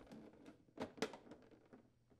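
Plastic dispenser user interface panel snapping into its refrigerator housing: two faint sharp clicks about a second in, with a few smaller ticks around them.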